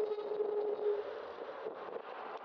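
Wind buffeting a bicycle-mounted camera microphone, with road and traffic noise, and a steady mid-pitched whine that stops about a second in.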